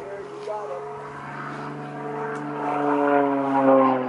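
Engine and propeller of a single-engine aerobatic airplane diving overhead, a steady drone that grows louder toward the end while its pitch slides down.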